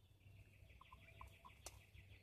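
Near silence with a faint, high, pulsed call running through it, a bird outside the tent, and a few soft clicks near the end.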